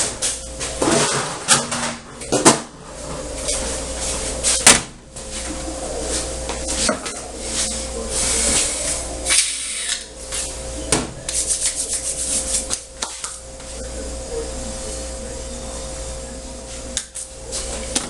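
Irregular knocks, clicks and rustling as items are picked up and set down on a stainless steel worktop, over a faint steady hum.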